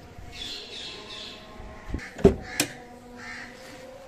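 Bird calls, several in quick succession in the first second and one more later. Two or three sharp knocks a little past the middle are the loudest sounds.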